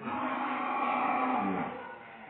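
A cow moos once, one long call of about a second and a half whose pitch falls away at the end.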